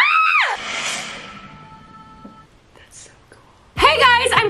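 A girl's short, loud, high-pitched excited squeal, rising then falling in pitch over about half a second, over pop music that then fades away.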